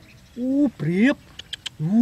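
A man's voice saying a couple of short words, followed by a few faint clicks.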